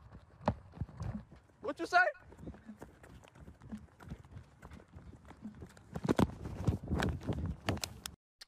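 Muffled rustling and irregular thumping picked up by a smartphone microphone inside the pocket of a man running on foot: fabric rubbing over the mic and the jolts of his footfalls, heavier near the end. A brief voice cuts in about two seconds in.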